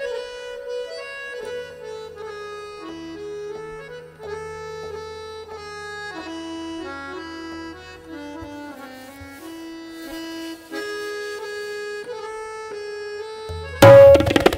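Harmonium playing the lehra, the repeating melody that accompanies a teentaal tabla solo, on its own, its notes stepping up and down over a low held bass note. Near the end the tabla comes back in with a sudden loud flurry of strokes.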